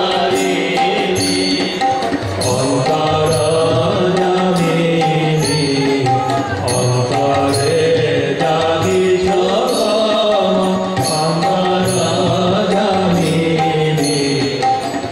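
Kali kirtan: devotional singing with harmonium and violin accompaniment over a steady, evenly spaced percussion beat.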